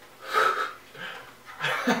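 Short breathy laughter in three quick bursts, like chuckles.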